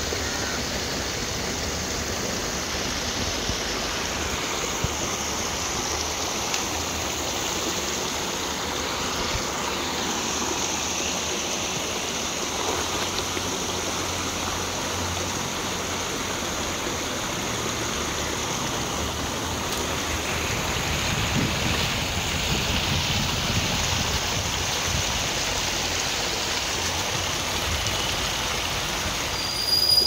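Steady rush of water from a shallow stream pouring over a small rocky drop, a little louder in the second half.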